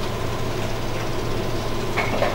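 Room tone without speech: a steady hiss with a low, constant hum.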